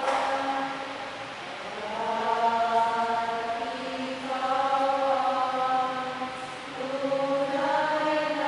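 A church choir singing a slow offertory hymn in long held notes, the phrases moving to a new pitch every couple of seconds.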